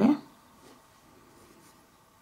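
Faint light scratching and tapping of an acrylic nail brush working acrylic onto a plastic nail tip.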